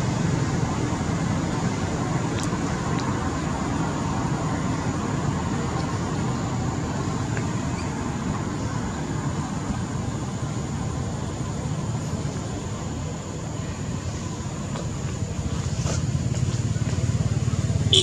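Steady low rumble of road traffic and motorbike engines in the background, holding fairly even throughout.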